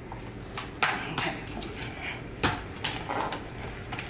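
A handheld masher pressing and squishing seasoned avocado in a plastic container, with several irregular knocks as it strikes the container.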